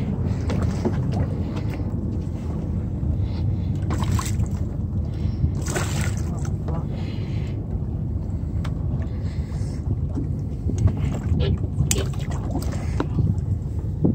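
Steady low rumble of a fishing boat's idling engine, with scattered sharp clicks and murmured voices over it.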